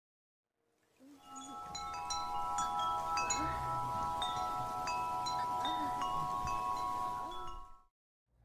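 Wind chimes ringing: scattered high pings over several held tones, starting about a second in and cutting off just before the end.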